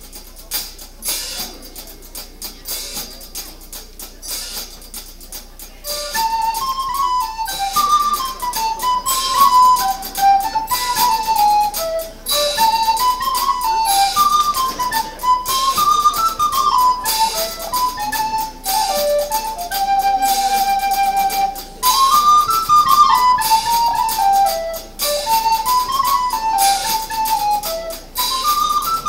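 Live band playing the instrumental intro of a song: a few seconds of soft, ticking percussion, then, about six seconds in, a recorder comes in with a single stepwise melody over the drums, with one long held note about two-thirds of the way through.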